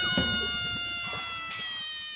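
Edited-in comic sound effect: one long drawn-out note that dips in pitch at its start, then holds, slowly falling and fading.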